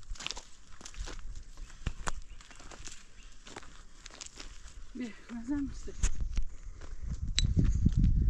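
Footsteps on dry, stony ground, a string of irregular crunches and clicks. A short voiced sound comes about five seconds in, and a low rumble rises near the end.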